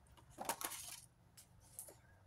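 A few faint, light clicks and clinks, a small cluster about half a second in and two fainter ones near the end, over quiet room tone.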